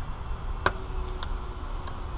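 A sharp click about two-thirds of a second in, with a faint ringing tone lingering for about a second after it, then two fainter ticks, over a low steady rumble. These are tool-on-glass noises while a car's rear quarter window is being cut out of its urethane.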